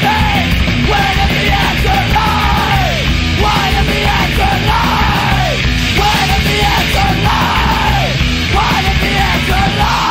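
Punk rock song played at full volume by a band, with yelled vocals whose shouted lines drop in pitch at their ends.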